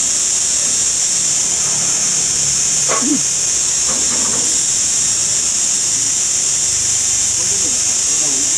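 A steady, loud, high-pitched hiss that doesn't change throughout, with a brief faint voice-like sound about three seconds in.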